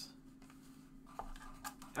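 Faint rustling and light ticks of baseball trading cards being handled, over a low steady hum.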